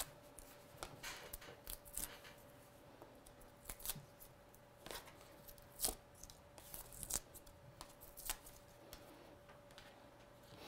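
Hands handling paper card and a plastic stamp sheet on a craft mat: scattered faint clicks, taps and rustles, over a faint steady hum.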